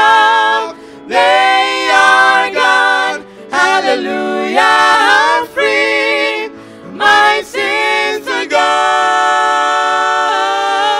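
Gospel vocal trio of two women and a man singing in harmony through a church PA in short phrases, settling into one long held chord near the end.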